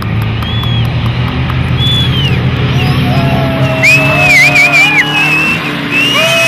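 Engines of small off-road race cars running in a steady low drone. From about three seconds in, a string of drawn-out high tones that rise and fall sits over the engines.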